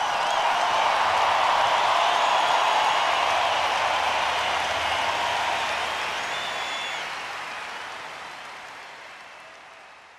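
A large stadium crowd cheering and applauding, with a few high whistles, fading away over the last few seconds.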